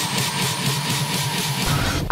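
Electronic dance music build-up: a rushing white-noise sweep with a slowly rising pitch over a fast, even pulse. Deep bass comes in near the end as the mix moves into the next track.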